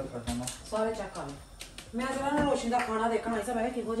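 Voices talking in a small room, with a few light clicks.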